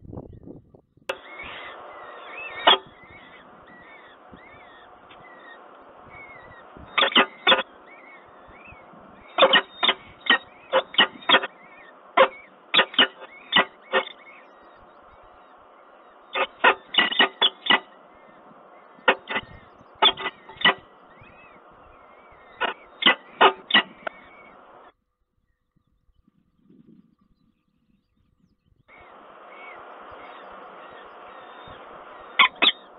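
Peregrine falcon calls at the nest: short, sharp notes in quick series of three to six, repeated in bursts, with faint high chirps between them, over a steady background hiss that cuts off suddenly about 25 seconds in and comes back near the end.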